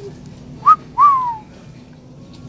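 A person whistling a two-note wolf whistle, loud and close: a short rising note, then a note that swoops up and slides down.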